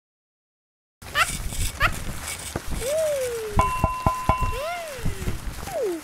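Animated logo intro sound: after about a second of silence, a string of playful sound effects. There are two quick rising chirps, then sharp clicks over a held tone, and several sliding tones that rise and fall in pitch.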